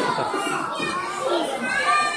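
A crowd of young children's voices overlapping, talking and calling out all at once.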